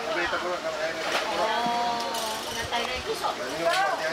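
People talking close by: voices in conversation.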